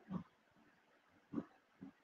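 Three short, faint low vocal noises from a person at the microphone: one near the start, one about a second and a half in and one just before the end.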